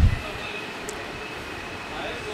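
Saab room air cooler's two blowers running: a steady rush of air with a faint high-pitched whine.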